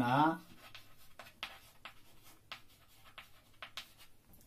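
Chalk writing on a blackboard: a scatter of short, sharp taps and scrapes at irregular intervals as letters are formed.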